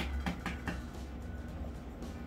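Soft, dull taps of hands pressing and turning biscuit dough on a floured wooden board, several in the first second, over a low steady hum.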